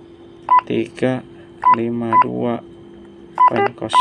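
Motorola GP2000 handheld radio's keypad beeping: about five short, single-pitched beeps, one per key press, as the digits of a transmit frequency are keyed in.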